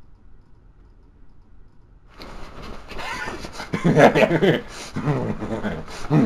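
A man laughing without words, starting about two seconds in and loudest near the middle, after a couple of seconds of low hiss.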